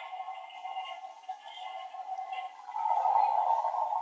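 Electronic sound effect played through a battery-powered toy toilet's small speaker, thin and tinny, growing louder about three seconds in.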